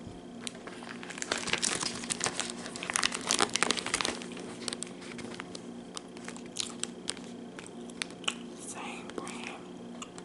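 Clear plastic meat-stick wrappers crinkling as they are handled close to the microphone. The crackling is densest and loudest between about one and four seconds in, then thins to scattered crackles.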